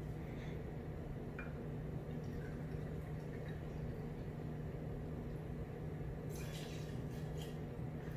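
Whiskey being poured from a bottle into a jigger, then tipped into a metal cocktail shaker with a short splash about six seconds in, over a faint steady low hum.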